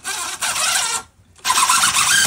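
Cordless impact driver running screws into pine boards in two bursts: the first about a second long, the second starting about a second and a half in.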